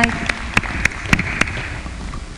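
Brief, thin applause from a small part of the audience: about six distinct hand claps, roughly three a second, over a faint patter.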